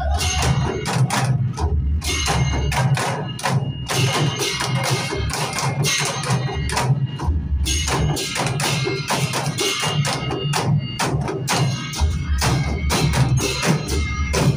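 An ensemble of Newar dhime drums, the large double-headed rope-laced barrel drums, played together in a fast, dense, steady rhythm, with deep booming strokes under sharper slaps and stick hits.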